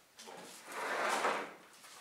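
Old wooden panelled door being swung shut: a brief noise of about a second with no sharp bang.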